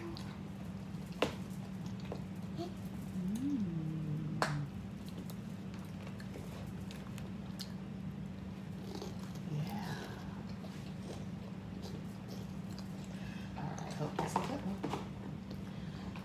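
Children chewing and munching on hoagie sandwiches and cheese balls, over a steady low hum. A short hummed voice sound comes about three seconds in, and there are a couple of sharp clicks.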